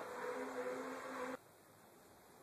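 A man's voice trailing off into a faint, steady held hum over background hiss, cut off suddenly about a second and a half in, then near silence.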